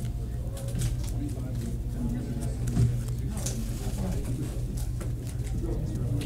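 Indistinct voices talking in the background over a steady low hum.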